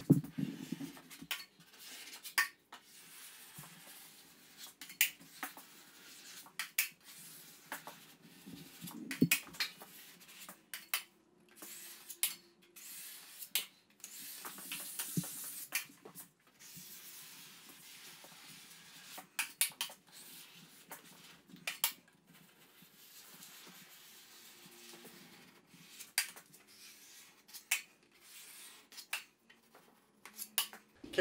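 Metal drywall taping knife scraping joint compound, smoothing the mud along the edge of a corner bead and working it off a mud pan: many short, irregular scrapes and clicks.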